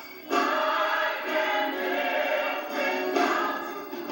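Gospel choir singing with music, the voices swelling suddenly louder about a third of a second in and staying full.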